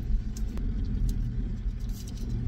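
A car running, heard from inside the cabin as a steady low rumble, with a few faint clicks about half a second in.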